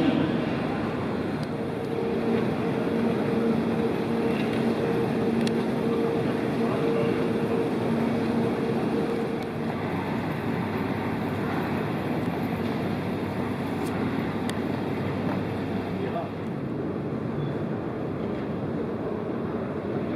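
Airport terminal ambience: a steady wash of ventilation noise and indistinct voices of travellers, with a faint steady hum through the first half that stops about halfway.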